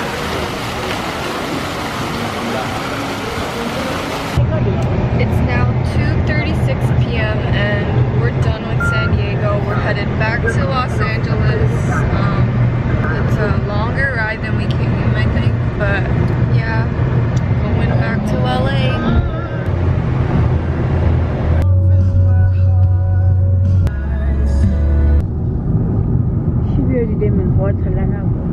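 Water splashing from a public fountain for about the first four seconds, then background music with a strong, steady bass line.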